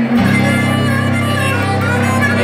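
Live acoustic blues: an acoustic guitar holding a steady chord under a harmonica playing sustained, wavering notes, with no singing.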